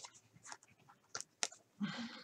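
Faint, brief rustles and scrapes of cardboard trading cards being handled and slid against plastic sleeves, a few separate strokes about half a second apart.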